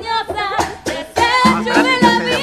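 A woman singing a line of a song into a handheld microphone, her voice wavering in pitch, with sharp percussive hits joining about half a second in.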